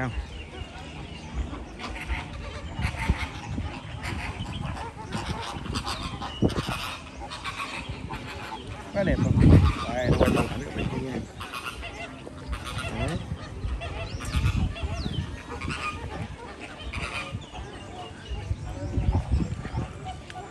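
A flock of flamingos calling with repeated, goose-like honks throughout, with a louder, deeper sound about halfway through.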